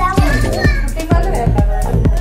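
Music with a steady beat, about two beats a second, with children's voices over it.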